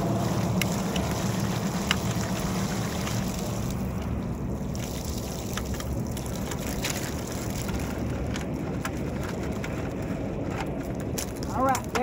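Steady low wind rumble on the microphone, with scattered light clicks and taps as blue crabs are shaken out of a plastic bucket into a wire crab cage.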